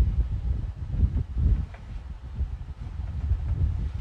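Low, uneven rumbling noise on the microphone while a machete and its cord-wrapped wooden sheath are handled and turned over on a workbench.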